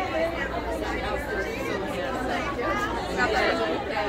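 Indistinct background chatter of several people talking at once.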